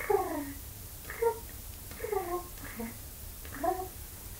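A kitten mewing in about five short cries, each under a second, most falling in pitch and the last rising. The kitten is arched and puffed up with fear.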